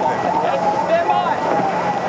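Race commentary speech over a steady low hum.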